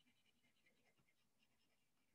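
Near silence, with very faint, scattered scratching of a coloured pencil being worked over paper.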